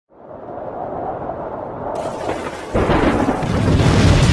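Intro explosion sound effect: a low rumble swells for nearly three seconds, then a sudden, much louder blast breaks about three-quarters of the way through.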